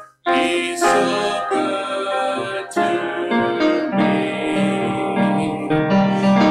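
Church worship music: piano playing sustained chords with singing voices. The sound cuts out for a split second right at the start, then comes back abruptly.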